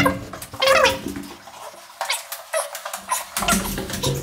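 A man laughing in short, high-pitched gliding bursts during the first second. Then quieter rustling, and a low rumbling noise near the end.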